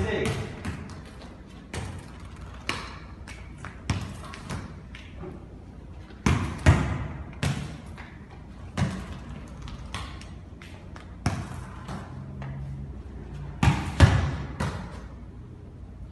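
A futsal ball being kicked and bouncing on a hard tiled floor in a large echoing hall: a dozen or so sharp thuds at uneven intervals, each ringing briefly in the room, loudest about seven seconds in and again near fourteen seconds.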